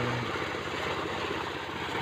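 An engine idling steadily in the background, a low, even rumble.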